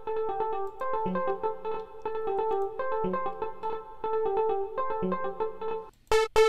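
Looping synth music: a fast arpeggio of short soft-piano synth notes over a low bass note that returns about every two seconds. It cuts out briefly at the very end.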